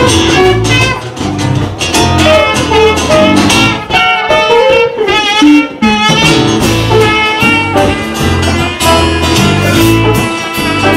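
Live band jam with drum kit, electric bass and electric guitar, a trumpet playing a wavering melody over them.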